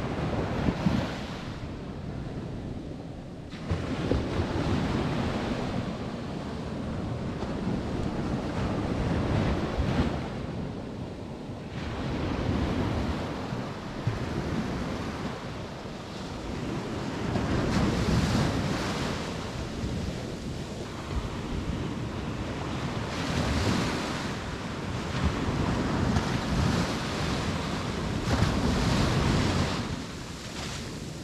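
Sea surf breaking on the beach, the rush of the waves swelling and fading every few seconds.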